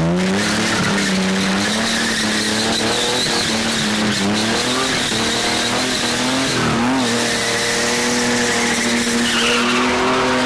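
Ford Cortina spinning: the engine is held at high revs, its pitch wavering up and down, over continuous tyre screech as the rear tyres spin on tarmac. About seven seconds in the revs dip briefly, then climb back.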